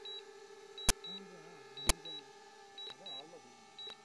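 Steady hum of a DJI Mavic drone's propellers as it comes down to land. Short high beeps and a sharp click sound about once a second over the hum.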